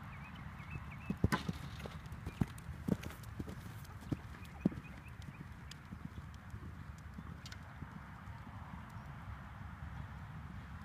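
Hoofbeats of a horse cantering on arena sand, with a run of sharper knocks in the first half.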